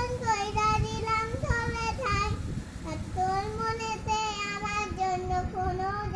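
A young child singing a Bengali song unaccompanied, holding long notes with a slight waver in pitch. There is a short breath about halfway, and the tune then goes on lower.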